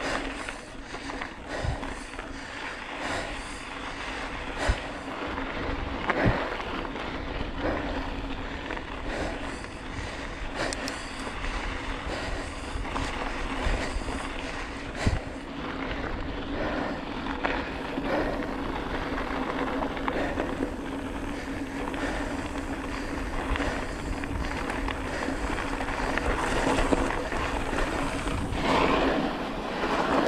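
Bicycle tyres rolling over a rough gravel dirt road, a steady rough noise with scattered knocks and clicks from stones and the bike rattling. It gets louder near the end, when the tyres nearly wash out in loose sand.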